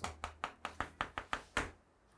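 Chalk striking and scraping on a chalkboard as a word is written in short strokes: a quick series of about nine sharp taps over a second and a half.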